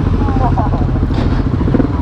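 Motorcycle engines running at low speed as the bikes pull away, a rough, pulsing low rumble. A faint voice can be heard about half a second in.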